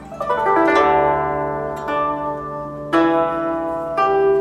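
Background music on a plucked string instrument: a rolled chord near the start, then fresh strummed chords about two and three seconds in, each left ringing.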